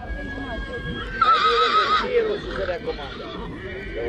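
A draft horse whinnying once: a loud, quavering call lasting under a second, starting a little after one second in.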